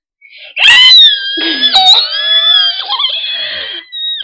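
A young child screaming in a very high pitch, in fun, starting about half a second in and held for about three seconds, with a lower voice cutting in partway through.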